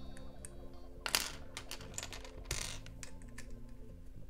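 Plastic LEGO bricks clicking as they are handled and pressed onto a small model. The sharpest click comes about a second in, with another around two and a half seconds and lighter ticks between.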